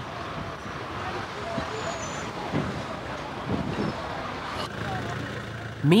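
Steady outdoor traffic noise at an airport terminal kerbside, an even hum without any distinct event.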